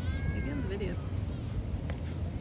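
Distant high-pitched voices calling out briefly in the first second, with a short click near the end and a steady low rumble underneath.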